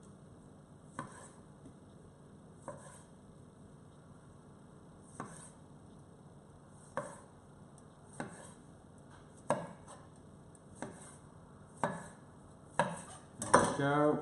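A kitchen knife halving small plum tomatoes on a wooden chopping board: single sharp knocks of the blade hitting the board, one every second or two, coming a little faster near the end.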